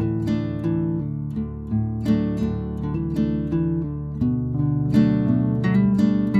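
Background music: an acoustic guitar playing chords in an even, steady rhythm, each stroke ringing on.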